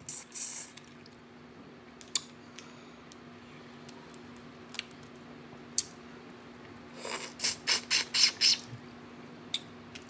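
Eating boiled crawfish with the mouth close to the microphone: a sucking slurp right at the start, a few sharp clicks of shell being broken, then a quick run of about eight loud sucking and shell noises about seven seconds in. A faint steady hum runs underneath.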